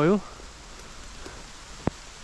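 Steady rain falling through pine and spruce trees: an even hiss, with one sharp tap near the end.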